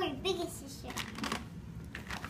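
A plastic bag of toy parts crinkling as it is handled, with a few short crackles about half a second to a second and a half in.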